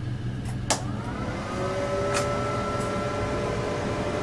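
A key switch clicks, then the diode laser hair removal machine's cooling fans start up: a hum that rises in pitch and settles into a steady tone as the machine powers on.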